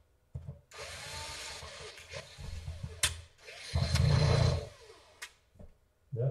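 Cordless drill-driver spinning a screw into a laptop's bottom panel in two runs, the second one louder, with sharp clicks between them. The screw seems not to seat: right after, the technician wonders whether it is a bad screw.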